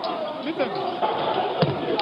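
Many people talking over one another in a large hearing room, a confused commotion. There is a single dull thud about one and a half seconds in.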